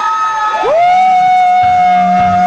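Drawn-out shouts through the PA microphone, held on high steady notes. One voice rises and holds, and about half a second in a louder one swoops up and holds a single long note, over crowd cheering.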